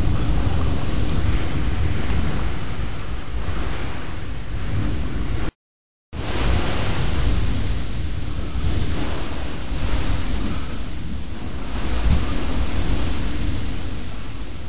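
Heavy summer thunderstorm downpour: a dense, steady rush of rain and wind with a low rumble underneath. The sound cuts out completely for about half a second midway.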